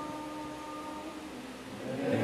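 Church hymn music between phrases: a held note dies away over about the first second, leaving a lull. The congregation's singing starts again just before the end.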